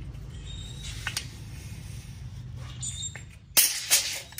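Steel tape measure held out in a tall standout: a few faint clicks, then a loud sharp metallic clatter twice near the end as the extended blade buckles.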